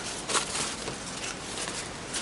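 Crumpled paper towel rustling as it is handled, with a couple of light knocks about half a second and a second in.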